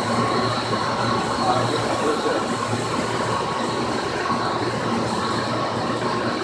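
Room full of large electric water pumps, 25 horsepower each, running together: a steady mechanical hum with high, even whining tones over it.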